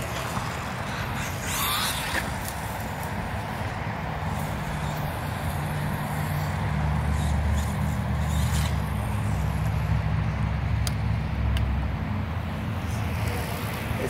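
Steady outdoor noise with a low engine hum that builds about four seconds in and fades near the end, as of a motor vehicle going by.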